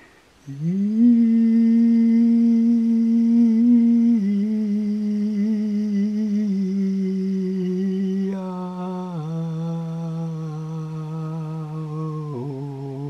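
A single voice humming a chanted mantra in long held notes. It slides up into the first note about half a second in, holds it, then steps down in pitch about four and eight seconds in, the tone turning brighter and more open at the second step.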